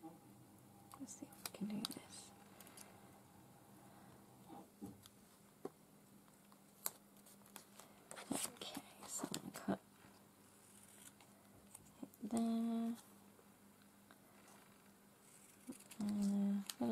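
Small pieces of sticker paper handled on a journal page: light rustles and soft clicks and taps of fingers and paper, scattered through the first ten seconds. About twelve seconds in, a person gives a short closed-mouth hum.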